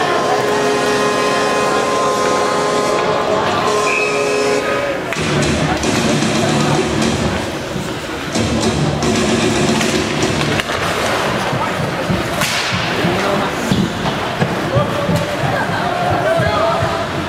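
Music plays for about the first five seconds and then stops, giving way to the noise of an ice hockey game: skates scraping on ice and sticks and puck clacking, with a sharp crack about twelve seconds in and voices in the rink.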